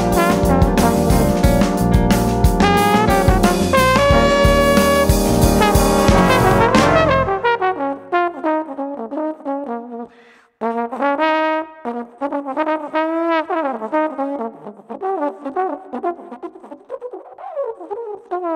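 A jazz trombone ensemble with drums plays a full, dense passage. About seven seconds in the band cuts off, leaving a single unaccompanied trombone playing a phrase with sliding, bending notes, broken by a short pause around ten seconds in.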